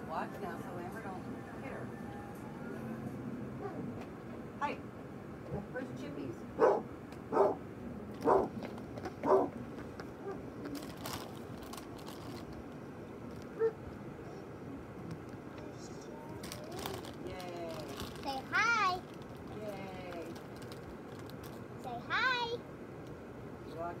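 A toddler's short high-pitched vocal sounds: four quick calls about a second apart, then two higher, wavering squeals near the end. Crinkling of a plastic snack bag as the child reaches into it around the middle.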